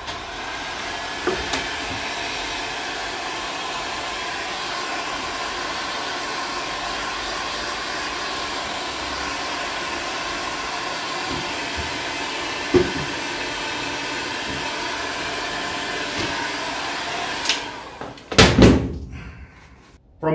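Handheld electric heat gun running steadily, a blowing rush with a faint motor whine, as it warms a vinyl go-kart sticker so it can be moulded into place. It cuts off about three seconds before the end, followed by a couple of knocks.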